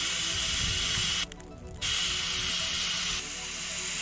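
Air hissing steadily out of a pickup's tire valve as the tire is let down to gain traction in deep snow. The hiss breaks off for about half a second a little over a second in, and is slightly quieter near the end.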